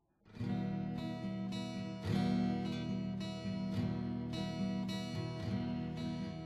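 Guitar introduction of a song: chords strummed in a steady rhythm, starting about a quarter second in, changing chord about two seconds in.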